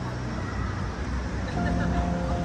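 Open-air street ambience: a steady wash of traffic noise with people's voices in the background. Background music with held notes comes back in near the end.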